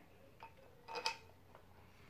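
A few faint clicks and a light clink from a drawer handle and its screw being fitted by hand, the loudest about a second in.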